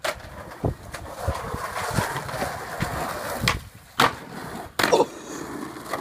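Skateboard wheels rolling over pavement, with sharp clacks of the board hitting the ground: one at the start and two more about four and five seconds in.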